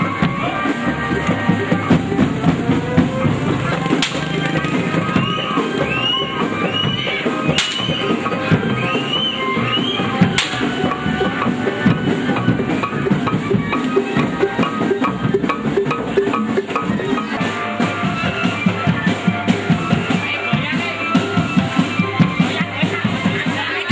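Jaranan procession drumming: hand-carried barrel drums and other percussion keep up a dense, steady beat. Three sharp cracks come in the first half, and a short high rising-and-falling tone repeats several times between them.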